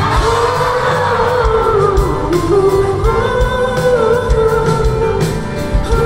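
Live pop-rock band with a male singer holding long, slowly bending sung notes over a steady drum beat.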